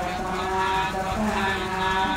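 Buddhist monks chanting a Pali recitation in unison, a steady drone of long-held notes that shift slowly in pitch.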